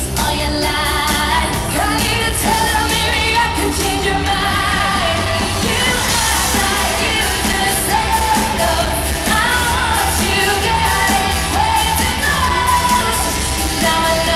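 Live pop-rock band playing at full volume through a big hall's PA system: electric guitars, bass and drums, with a melody voice over the top.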